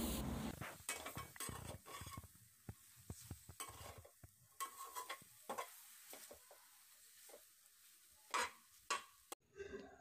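A perforated metal spatula scraping and clinking against a metal pan as pork pieces with dry fermented bamboo shoots are stirred, dry-fried without oil. Light sizzling in the first couple of seconds fades, leaving faint, irregular scrapes and taps, with one louder scrape near the end.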